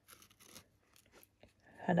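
Faint handling noise of fingers gripping and turning a small paper-collage card: a few soft, short crinkly ticks, with a woman's voice starting near the end.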